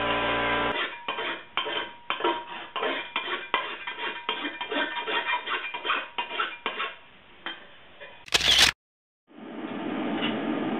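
Light metallic clinks and knocks, two or three a second and uneven, from a formed sheet-metal tank part being handled and tapped. Near the end a brief loud burst of noise cuts off to silence, and a steady hiss follows.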